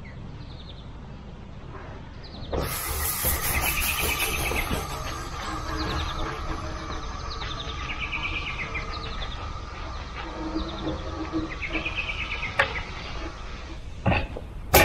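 Stiff-bristled concrete broom dragged across fresh wet concrete for a broom finish: a scratchy swishing that starts about two and a half seconds in and carries on steadily.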